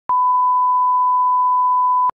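Steady 1 kHz line-up tone of a TV commercial's slate: one unbroken pure beep at an even level, switched on abruptly with a click just after the start.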